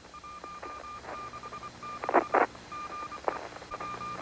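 Space-shuttle air-to-ground radio loop between transmissions: an interrupted electronic tone beeping on and off over the channel hiss, with scattered clicks and a short burst of noise about two seconds in.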